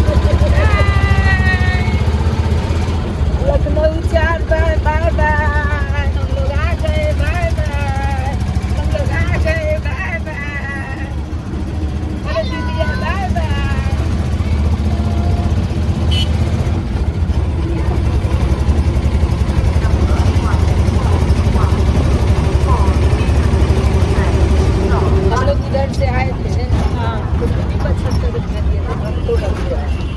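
Auto-rickshaw engine running with a steady low drone as it drives, heard from inside the open passenger compartment. High-pitched voices rise over it in the first half.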